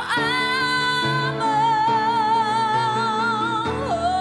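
A man and a woman singing a pop ballad in duet into microphones, holding a long note with vibrato over piano accompaniment; the held note ends near the close.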